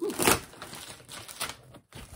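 Cardboard parcel being cut open by hand: a knife scraping through packing tape and the stiff cardboard flaps scraping as they are pulled up, a run of irregular scratchy clicks that is loudest just after the start.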